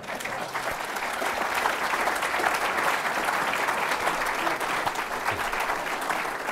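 Audience applauding, building up quickly at the start and easing off slightly near the end.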